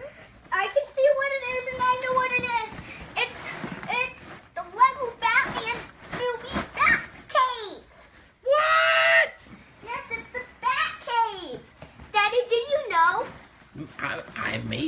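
A child's high-pitched, excited shouts and squeals as he unwraps a big present, with a loud shriek about halfway through.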